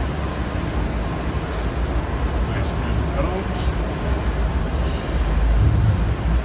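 Steady low rumble of a busy exhibition hall, with indistinct voices in the background.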